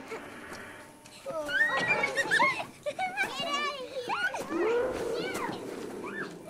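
Children's high voices shouting and chattering without clear words, starting about a second in, with one voice wavering up and down in the middle.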